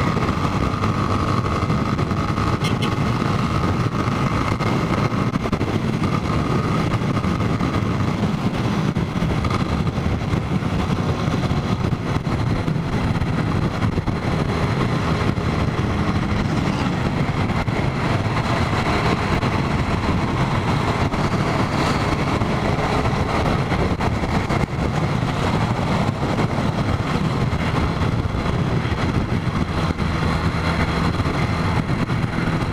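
Motorcycle engine running steadily while riding at road speed, mixed with a constant rush of wind and road noise.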